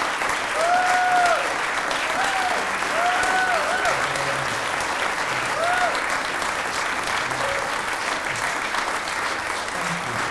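Audience applauding steadily, with a few voices calling out in short rising-and-falling cheers during the first half.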